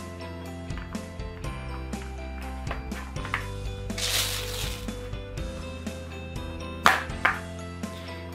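Plastic clicks and knocks from a toy Play-Doh grill press being closed, pressed down and opened, over light background music. There is a brief rush of noise about halfway through, and two sharp knocks near the end.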